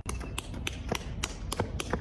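Running footsteps of sneakers on pavement: sharp, evenly spaced taps about three to four a second.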